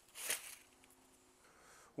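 A brief rustle of dry corn husks as an ear of corn roasted in its husk is lifted off the grill grate onto a plate.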